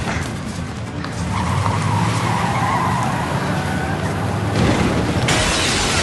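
A car engine running hard with tyres squealing as it speeds off, over dramatic music. About five seconds in the sound cuts suddenly to a louder, even hiss.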